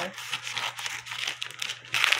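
Scissors cutting plastic packing tape on a cardboard box: crinkling and scraping of tape and cardboard, with a few small clicks as the flap is worked loose.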